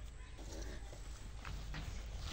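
Soft footsteps and rustling on grass, with a few light clicks, over a steady low rumble.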